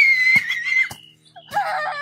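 A young girl's high-pitched scream, held for about a second, with two short knocks during it; near the end another voice starts laughing.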